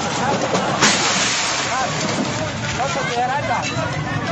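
Voices calling out over a constant loud rushing noise, with one sharp bang about a second in.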